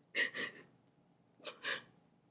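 A woman crying: two gasping sobs about a second apart, each a quick double catch of breath.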